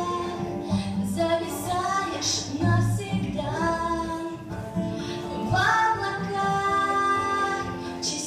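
A young woman singing a Russian pop ballad into a handheld microphone, her voice amplified through loudspeakers over a backing track.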